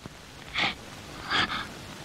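A woman sobbing: two breathy gasps a little under a second apart.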